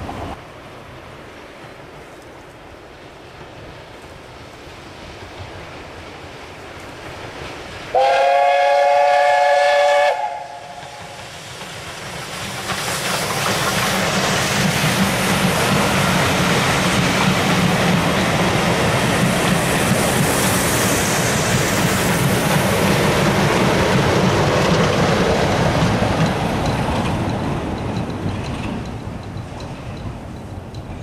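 A heritage passenger train approaches and passes close by. About eight seconds in, a locomotive sounds one loud blast of about two seconds, several notes together. Then the rumble and wheel noise of the coaches swells from about twelve seconds, holds steady as they roll past, and fades near the end.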